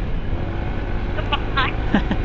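Honda ADV 160 scooter's single-cylinder engine pulling steadily on an uphill climb, still holding its revs, under a low rumble of wind and road noise. A brief bit of a voice comes near the end.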